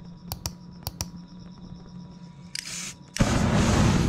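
A few sharp clicks, a short spray hiss, then a loud whoosh as a burst of aerosol spray paint is set alight into a flame, lasting about a second near the end.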